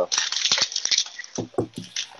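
Crinkling and crackling of plastic and foil trading-card packaging being handled, a dense run of sharp crackles followed by a few softer taps near the end.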